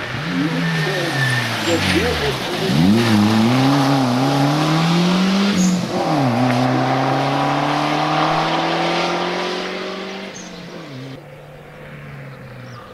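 Audi A4 rally car's engine driven hard through a bend: the revs fall over the first two seconds as it slows, then rise and fall through the gears, with a sharp gear-change dip about six seconds in before a long, steady climb in pitch as it pulls away. It fades out near the end.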